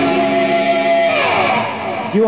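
Electric guitar holding a sustained chord that, about a second in, slides down in pitch.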